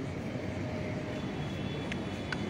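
Steady low background rumble of outdoor urban surroundings, with a faint click near the end.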